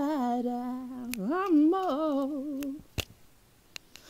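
A woman singing unaccompanied in a held-back belt, holding one long note that wavers in pitch in the middle and breaks off a little under three seconds in. A single sharp click follows about three seconds in.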